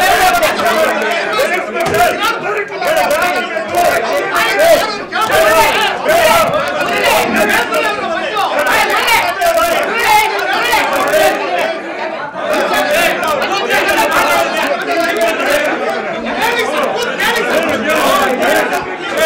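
Several men shouting and arguing over one another in a heated quarrel, a dense, continuous tangle of raised voices with no single speaker standing out.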